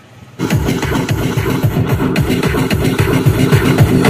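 Electronic dance music with a steady beat played loud through a pair of 1000 W, 8-ohm speakers wired in parallel to 4 ohms, driven by a DIY IRS2092S 500 W pure class D amplifier. It cuts in suddenly about half a second in and grows a little louder: the amplifier's first sound test.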